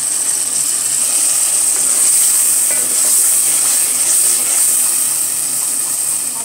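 Chopped tomatoes and green chillies frying in hot oil with onions in an aluminium pot: a steady, loud sizzle. A wooden spoon stirs and scrapes through it.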